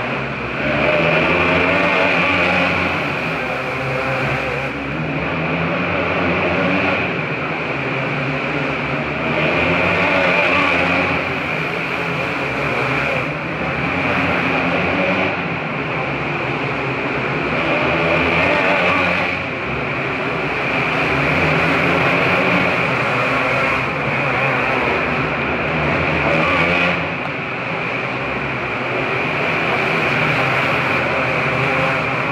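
A field of winged outlaw karts racing on an indoor dirt track. Their motorcycle engines run hard together, swelling and easing every few seconds as the pack comes through the turns past the stands.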